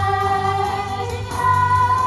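Children's stage cast singing a show tune over musical accompaniment, holding long notes, with a fresh held note starting about two thirds of the way through.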